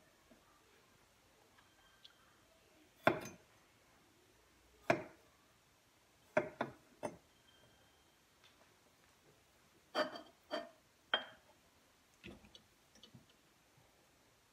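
Kitchen knife cutting cherry tomatoes on a wooden cutting board: about a dozen sharp, irregular taps of the blade striking the board, some in quick pairs and short runs, with quiet between.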